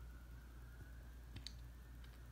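Near silence: room tone with a low steady hum and one faint short click about one and a half seconds in.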